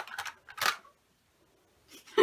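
Small plastic makeup containers clicking and knocking together as they are felt for and picked up by hand, with a short rustle about half a second in.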